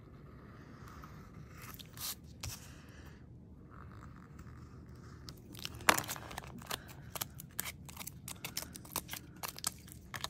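Craft knife scraping and cutting along the edge of metal foil tape. About six seconds in there is a sharp tap, then a quick run of crinkling clicks as the foil-covered piece is handled.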